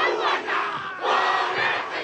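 A large crowd performing a haka, many voices shouting the chant in unison in two loud bursts about a second apart.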